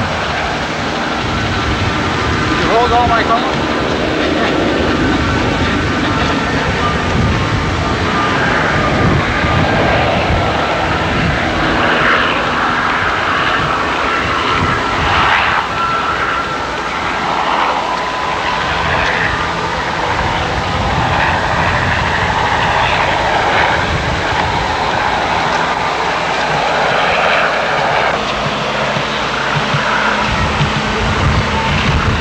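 Steady aircraft engine noise on an airfield, with people's voices in the background.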